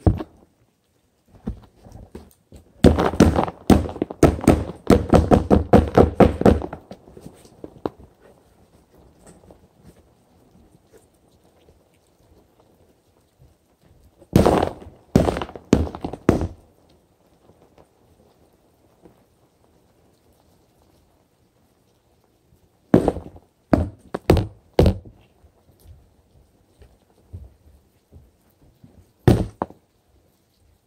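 Repeated knocking and thumping as the roach packaging is tapped against a container to shake the nymphs out. It comes as a dense run of quick knocks a few seconds in, then short groups of three or four knocks around the middle and again later.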